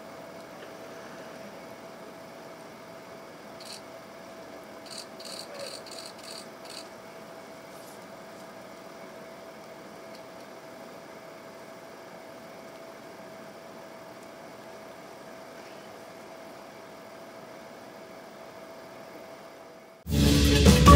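Faint outdoor ambience with a steady low hum. About four to seven seconds in comes a short run of high chirps, roughly three a second.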